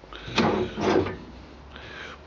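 Caravan kitchen pull-out unit with wire racks sliding out on its runners, with two rattling scrapes about half a second and a second in.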